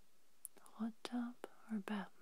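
Soft whispered speech starting about half a second in, with several short clicks between the words.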